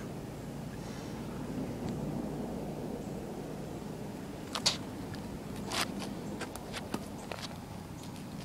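Steady low outdoor background rumble, with a few brief sharp clicks or puffs, the loudest about four and a half and six seconds in.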